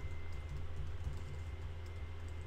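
Computer keyboard keys clicking lightly as a web address is typed, over a steady low electrical hum.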